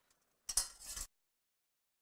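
A brief clatter of cookware at the stove, lasting about half a second and starting about half a second in.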